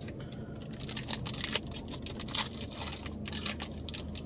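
Stiff chrome trading cards being handled and flipped through, sliding and clicking against each other in quick, irregular rustles.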